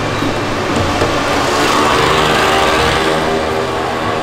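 A small engine running steadily, with an even mechanical drone.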